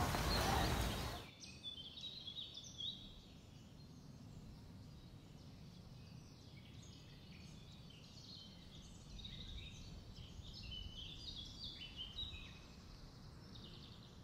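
Faint birdsong: many short chirps and trills from several birds over a low, steady outdoor background, busiest in the second half.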